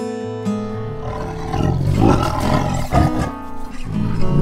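White tigers roaring in rough, repeated bursts as they fight, starting about a second in and loudest around the middle, over light acoustic guitar music.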